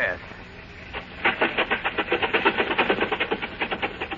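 Radio sound effect of a decrepit old car's engine catching after a moment and then running with a fast, even chugging, started with the choke out and the gas pressed.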